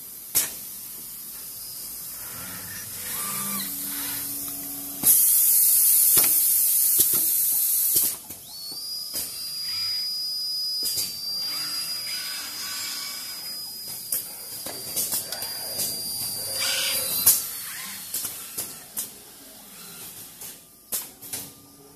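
Automated wire-processing machinery running, with pneumatic cylinders and valves clicking and clacking throughout. A loud burst of compressed-air hiss lasts about three seconds, then a high steady whine holds for most of the rest.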